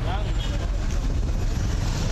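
Roadside ambience: a steady low rumble with bystanders' voices, one voice heard briefly at the start.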